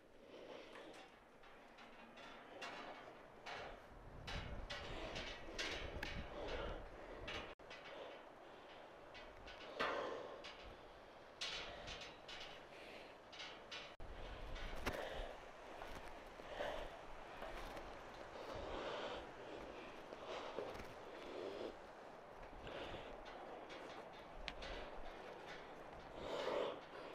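A man breathing hard through exertion and fear, in repeated heavy breaths, with irregular footsteps and knocks on metal stair grating.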